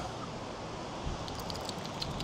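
Outdoor seafront background noise, mostly wind on the microphone, with a few faint light ticks in the second half.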